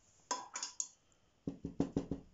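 A paintbrush knocking and scraping in a plastic watercolour palette: a short cluster of scrapes, then about five quick taps near the end.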